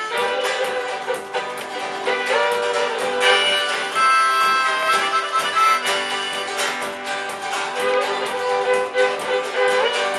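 Live folk instrumental on acoustic guitar, fiddle and a frame drum beaten with a stick, with the guitar strummed to a steady rhythm.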